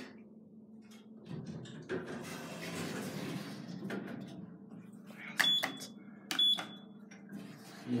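Two short, high electronic beeps about a second apart from the lift car's push buttons being pressed, over a steady low hum in the lift car, with a stretch of rushing noise a few seconds before the beeps.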